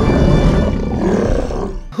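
Deep dinosaur roar sound effect for an animated Tyrannosaurus rex, one long roar that cuts off abruptly near the end, with music underneath.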